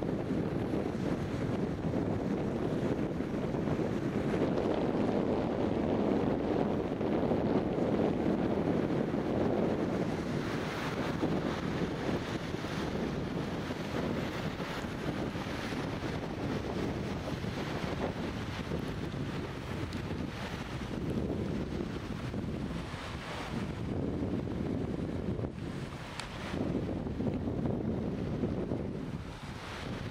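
Wind blowing over the microphone: a steady rushing, strongest over the first ten seconds or so, then easing, with short gusts later on.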